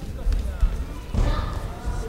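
Dull thuds of bare feet stepping on a wooden gymnasium floor, with a voice calling out briefly a little after a second in.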